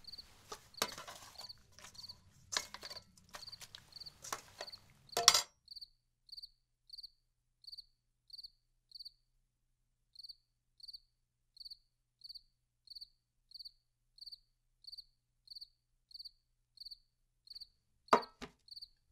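A cricket chirping at an even pace, short high chirps about three a second, with a brief pause near the middle. In the first five seconds scattered knocks and clicks sound over a low hum, the loudest knock about five seconds in, after which only the chirping remains.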